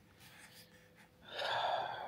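A man's long audible breath drawn in, lasting under a second, starting a little past the middle of a pause in his speech; before it only faint room tone.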